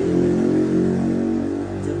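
A motor vehicle's engine running steadily, then fading in the last half second.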